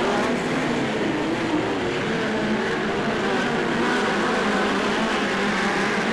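Midget race car engines running at racing speed on a dirt oval, several cars at once, their pitches wavering up and down as they go through the turns.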